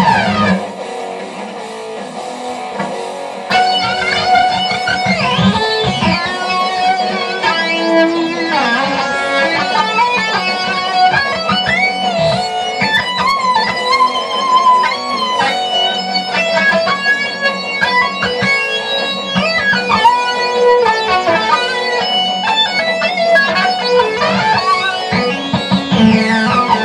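Electric guitar playing fast, busy lead lines with slides between notes, getting louder about three and a half seconds in.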